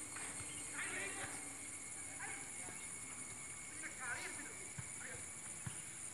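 Faint, indistinct voices over a steady high-pitched hiss, with a few soft knocks.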